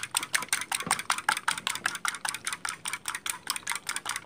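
Spiral coil whisk beating eggs in a ceramic bowl, the wire clicking against the bowl in a quick, even rhythm of about eight strokes a second, whisked until slightly frothy.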